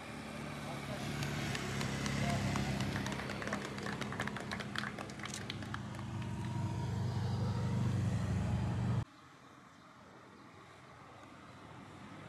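Police motorcycles running at low speed with a steady engine hum during a stunt demonstration, with a burst of hand clapping in the middle. About nine seconds in the sound cuts off abruptly to a much quieter background.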